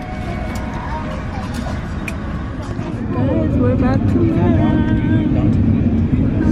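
Airliner cabin noise, a low steady rumble, with people talking in the background that gets louder about halfway through.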